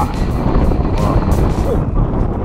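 Wind rumbling on the microphone, with men's shouting voices and background music under it.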